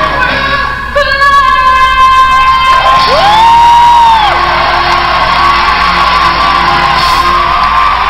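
Live pop ballad with a female lead singer holding a long high note over the band, with a second vocal line arcing up and back down midway, while the audience cheers and whoops.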